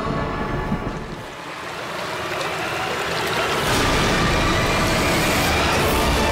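Dramatic TV-serial background score: a rushing, noisy swell that builds over a couple of seconds and then holds loud and steady, with faint sustained tones under it.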